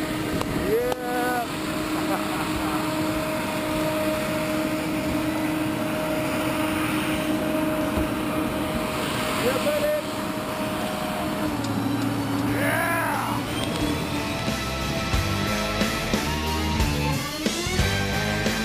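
Steady drone of a turboprop plane's engine running, with brief whoops and laughter over it. About fourteen seconds in, music with a steady beat takes over.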